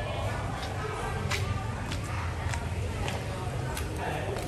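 Footsteps of several people walking on a paved alley, heard as irregular sharp clicks, over a steady low rumble and indistinct voices.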